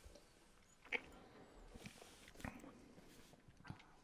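Near silence with a few faint clicks and mouth noises: whisky being sipped from a tasting glass.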